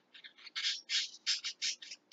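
A bird calling in the background: a quick run of short, high calls, about three to four a second.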